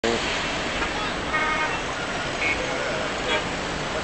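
Road traffic noise from busy roads below, with a couple of brief car-horn toots.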